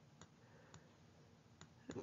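Near silence broken by a few faint, sharp clicks of a stylus tapping on a tablet screen as numbers are handwritten.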